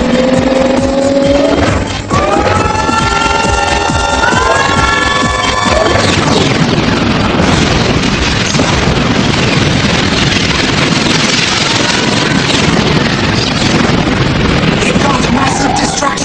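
Cartoon action soundtrack: dramatic music under layered battle sound effects. For the first six seconds stepped, gliding tones stand out. After that a dense, noisy wash of effects takes over.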